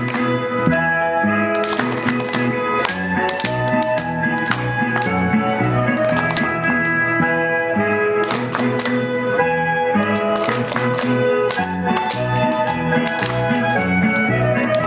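Recorded Norwegian folk dance music for the clap dance with a steady beat, broken every second or two by groups of sharp handclaps from the dancers.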